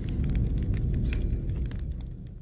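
Large house fire burning: a steady low rumble of flames with scattered faint crackles, fading away near the end.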